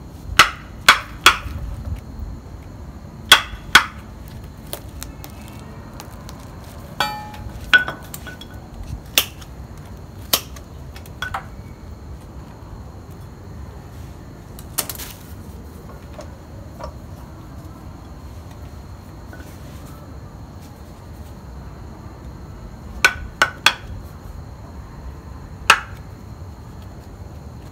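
Scattered sharp clicks and knocks of a metal root pick jabbing into a mini Ficus bonsai's root ball, loosening the roots: three quick ones at the start, single ones through the middle, and three more near the end.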